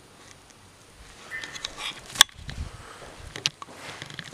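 Footsteps and handling noise from a handheld camera moving through an empty room, with one sharp click a little past halfway and a few fainter ticks after it.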